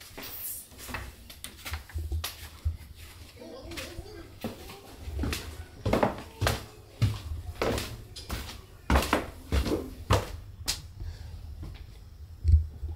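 Footsteps climbing a flight of stairs in a house: a series of dull thuds, roughly two a second through the middle of the clip.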